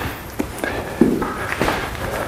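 Shuffling footsteps and a few soft knocks as a pair of dumbbells is picked up and carried to a flat weight bench, the loudest knock about a second in.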